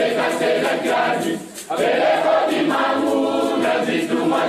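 A choir singing a song in Kikongo, in long sung phrases with a short break for breath about a second and a half in.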